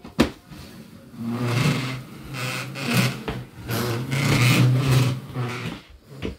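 A small plastic folding step stool being pushed across a wooden floor, scraping with a rough buzz in three or four pushes over about four seconds.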